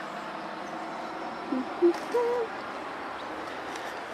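A bird from a nearby aviary gives a few short, low hooting calls about halfway through, each a little higher than the last, over a steady outdoor background hiss.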